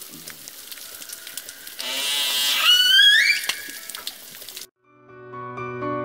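Dolphins calling to their companions: clicks over a steady hiss, then about two seconds in a louder call that rises into whistles climbing in steps, the loudest part. It cuts off suddenly near five seconds, and piano music starts near the end.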